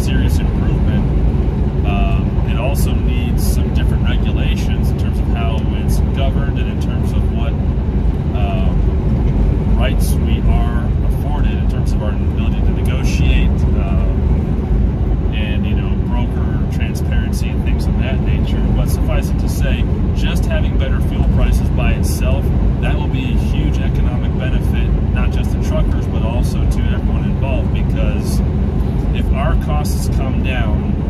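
Steady drone of road and engine noise inside a moving semi-truck's sleeper cab, with a man's voice talking over it.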